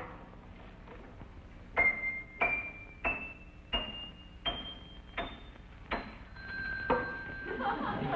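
An upright piano being tuned: single notes struck one at a time, each a step higher than the last, about one every two-thirds of a second, then a lower note that rings on near the end.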